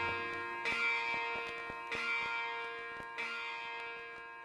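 Quiet bell-like chimes in recorded music, three struck notes about a second and a quarter apart over a steady ringing tone, slowly fading.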